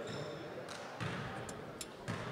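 Basketball gym ambience: a murmur of players' and spectators' voices in a reverberant hall, with a few short sharp knocks, the kind made by a bouncing basketball or shoes on the hardwood floor.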